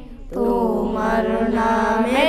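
A group of boys singing a Bengali Islamic song together in long held notes. The voices break off briefly right at the start, then come back in and hold.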